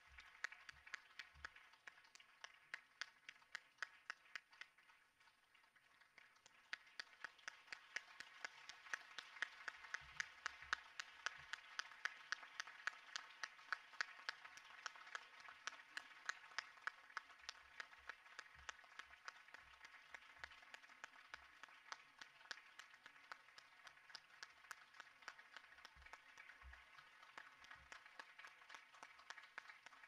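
Audience applauding, faint and spread out. The clapping thins briefly a few seconds in, swells to its loudest around the middle, then slowly tapers off.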